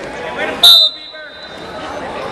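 Referee's whistle blown once, a short, piercing blast about two-thirds of a second in, stopping the action on the mat. Its pitch rings on faintly in the hall afterwards, amid spectators' shouts.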